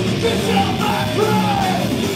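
Hardcore/crossover thrash band playing live: guitar and drums under a yelled lead vocal.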